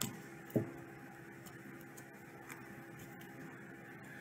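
A small pile of playing cards being cut by hand over a table: a soft tap about half a second in, then a few faint, scattered clicks of card edges.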